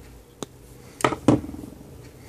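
Side cutters snipping a wire lead: a light click about half a second in, then two louder sharp clicks close together about a second in.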